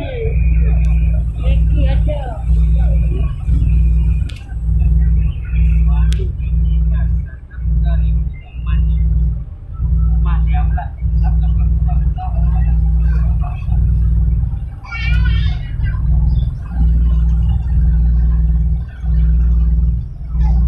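Loud low rumble in a passenger ferry cabin that swells and dips about once a second, with other passengers' voices faintly in the background.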